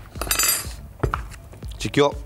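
A metal utensil clinking lightly against a glass bowl, a few sharp clinks.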